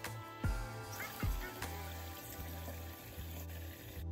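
Kitchen tap water running into a bowl of raw white rice as the grains are rinsed by hand, with background music playing over it.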